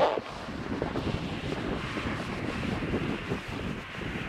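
Wind buffeting the camera microphone outdoors: a steady low rumbling noise, with one louder buffet right at the start.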